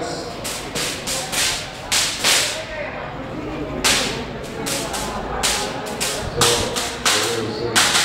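Fireworks going off: an irregular string of sharp bangs and cracks, a dozen or so over several seconds, with a crowd murmuring faintly underneath.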